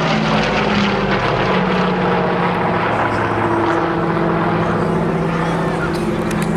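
Douglas DC-6 flying overhead, its four Pratt & Whitney R-2800 radial engines droning steadily, a layered hum of several engine tones that shift slightly in pitch.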